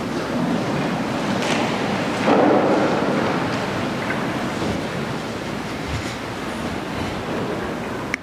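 Steady room noise of a church sanctuary, a rushing, rustling hiss with no voices. It swells louder for about a second a little after two seconds in.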